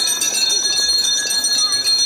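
A school handbell rung rapidly and without pause, a bright, high jangling ringing over the crowd's murmur: the traditional last bell marking the end of the final school day.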